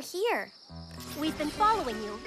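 Crickets chirping steadily as a night-time ambience in an animated soundtrack. A short voice sounds at the start, and low held music notes come in before the first second is out.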